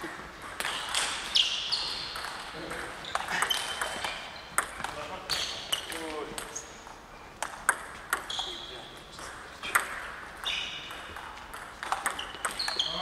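Plastic table tennis balls clicking off table tops and paddles at an uneven pace, many hits leaving a short high ping that rings on in a large sports hall.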